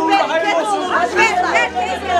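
Several women talking over one another in lively chatter.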